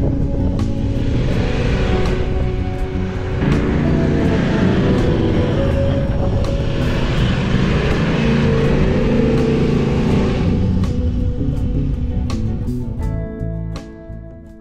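A Toyota LandCruiser 79-series dual-cab 4WD ute driving across soft sand dunes: a steady engine and tyre rumble that swells twice, with background music underneath.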